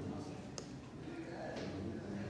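Quiet room tone with a single faint click about half a second in.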